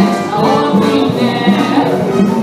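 Musical-theatre orchestra playing a song's accompaniment with a steady beat.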